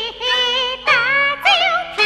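Female Beijing opera singing in the high, ornamented style of a huadan maid role, with a wide wavering vibrato, sung in several short phrases.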